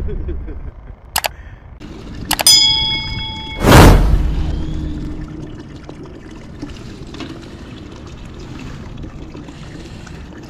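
Sound effects of a subscribe-button animation. A mouse click comes about a second in, then another click with a ringing bell ding about two and a half seconds in. A loud whoosh follows near four seconds and fades away.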